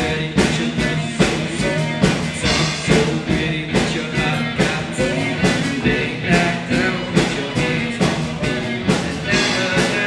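Live rock band playing: a drum kit keeping a steady beat under electric guitar.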